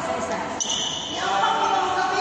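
Badminton players' court shoes thudding and squeaking on the court mat in a large hall, with a short high squeak just under a second in.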